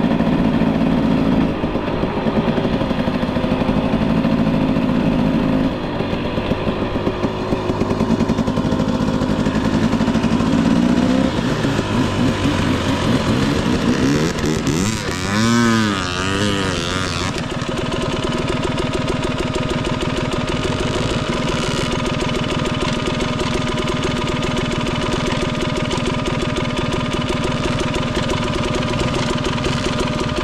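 Husqvarna 300 TE's single-cylinder two-stroke engine running under changing throttle, with quick revs rising and falling in pitch about halfway through, then settling into a steady, even note.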